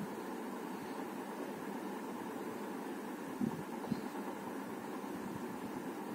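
Steady background room noise with no speech, an even hiss. Two faint, brief sounds come a little past the middle.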